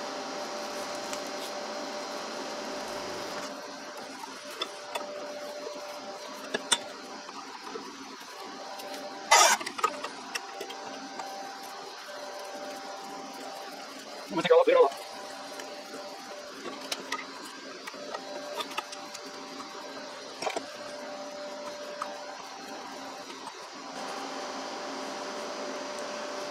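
Light metal clicks and one sharper clank about nine seconds in, as a corroded fastener that has just been broken loose is spun out by hand with a socket extension from a part held in a bench vise. A steady hum from the garage heater runs underneath.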